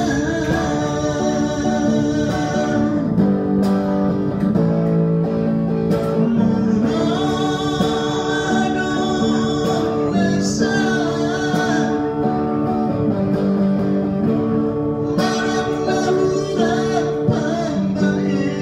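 A man singing while playing an acoustic guitar, a solo song with guitar accompaniment.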